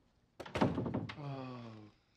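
A sudden thunk about half a second in, followed by a man's drawn-out vocal groan that falls slowly in pitch and fades just before the end.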